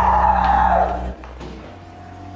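Background music: a loud held passage over a low drone that cuts off about a second in, leaving a quiet thin steady tone.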